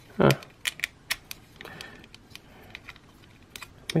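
Scattered sharp little clicks and taps from the plastic parts and hinges of a Bandai Digivolving Spirits WarGreymon transforming figure as they are pressed and worked into alignment by hand. The hinges are stiff and the panels will not seat.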